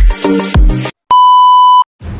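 Electronic intro music with a regular kick-drum beat stops short a little under a second in; after a brief silence, one loud, steady electronic beep sounds for under a second and cuts off.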